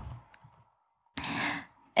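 A woman's single audible breath, about half a second long, a little over a second in, between stretches of near silence.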